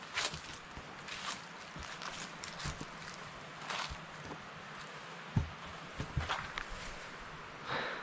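Footsteps through long grass and dry fallen leaves, an uneven run of soft rustling steps.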